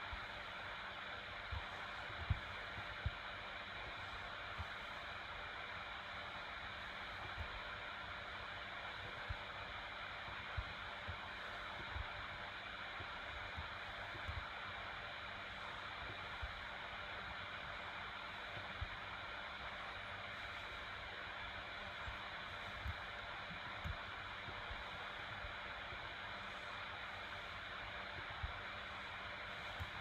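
Steady background hiss of a computer recording's noise floor, with scattered faint low thumps every second or two.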